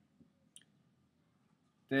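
Two faint short clicks in an otherwise near-silent pause, the first a fifth of a second in and the second about half a second in, then a man's voice starts at the very end.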